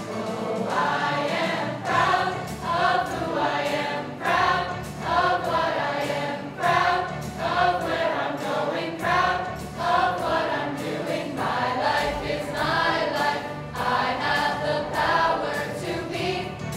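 A school choir of teenage students singing a song together in evenly paced phrases.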